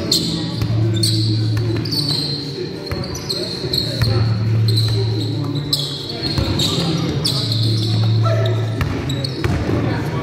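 Indoor basketball play in a large hall: a basketball bouncing on the wooden court, short high squeaks of sneakers on the floor again and again, and players' voices, all with the hall's echo.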